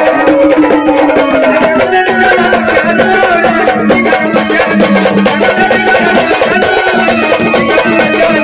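Loud live Marathi gondhal devotional music: held organ tones over fast, steady hand percussion.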